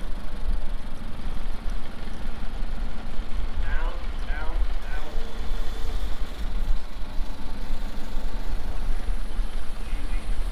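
Forklift engine running steadily at idle while it holds a load on its forks, with a deep low rumble throughout.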